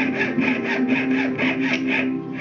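Jeweler's saw cutting thin sheet metal clamped against a wooden bench pin, with quick, even rasping strokes about five a second. Guitar music plays underneath.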